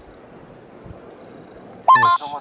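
Steady low outdoor background rumble with irregular low thumps, then a man's voice calling out loudly just before the end.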